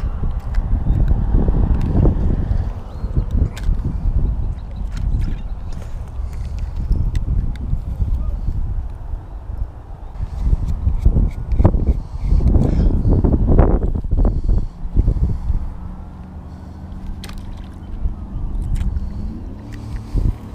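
Wind buffeting the camera microphone: an irregular low rumble that surges and fades, loudest about a second in and again around the middle, with scattered small clicks and rustles.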